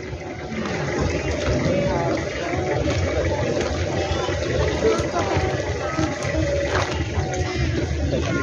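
Open-air market ambience: indistinct voices of people around the stalls over a steady wash of light rain.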